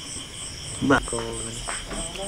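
Crickets chirping in a steady high pulse, about three chirps a second. About a second in, a person gives a short low hum.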